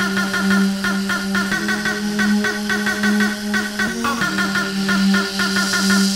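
Hardcore techno track from a 1990s rave compilation: a sustained synth bass note under a fast, repeating synth riff. The bass line briefly shifts pitch about four seconds in.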